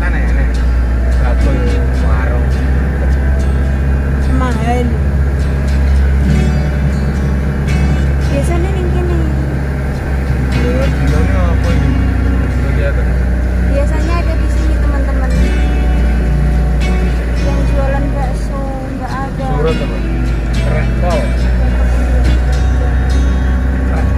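A song plays, a singing voice over steady backing music, above the constant low rumble of a car driving slowly.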